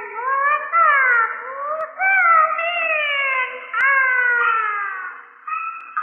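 High falsetto dan-role voice singing Peking opera on an old gramophone recording, in long held phrases that slide downward in pitch, with short breaks between them.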